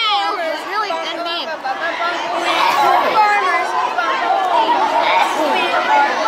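Cafeteria crowd chatter: many voices talking over one another, none clear enough to make out words.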